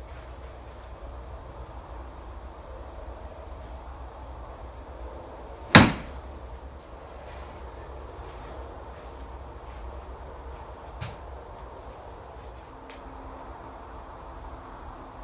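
One sharp strike of a Tour Striker training wedge hitting a golf ball off a range mat, about six seconds in, over steady low background noise. A faint tick follows about five seconds later.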